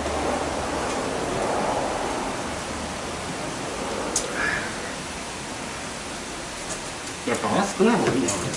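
A steady, even hiss with no clear pitch or rhythm, a single faint click about halfway, and a man's voice briefly near the end.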